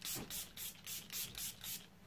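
Catrice setting-spray pump bottle misting a face, a rapid series of short hissing sprays about three a second, setting the first layer of powder.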